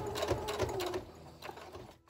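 Electric sewing machine stitching a short run, the needle ticking rapidly over the motor's low hum, then slowing to a stop about a second in as the stitching reaches a corner to pivot.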